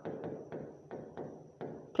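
Plastic stylus tapping and stroking on an interactive touchscreen board while writing: a run of light, irregular ticks, about eight in two seconds.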